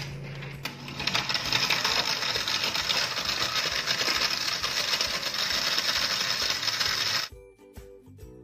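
Countertop blender running at full speed, blending grapes, yogurt and milk into a smoothie, with a steady rattling whir. It cuts off abruptly near the end and acoustic guitar music follows.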